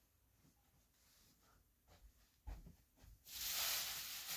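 Quiet room with a few soft knocks, then, about three seconds in, a loud steady rustle of cloth close to the microphone as freshly washed bedsheets are picked up and handled.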